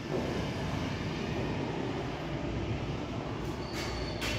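Steady background hiss and low rumble, with a short sharp tick near the end.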